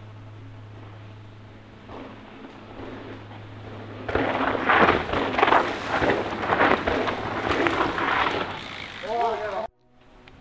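Several mountain bikes riding fast down a dirt trail and passing close by, their tyres skidding and rolling over loose dirt in loud, rough surges from about four seconds in for four or five seconds. A low steady hum comes before them, and a short shout is heard near the end.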